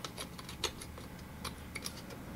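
A few faint, irregular clicks and taps of a SATA cable's plastic plug and the opened drive being handled as the cable is fitted to the drive's connector.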